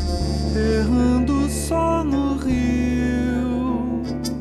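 Brazilian MPB song in an instrumental passage: long held low bass notes under a melody that steps between held notes with small slides.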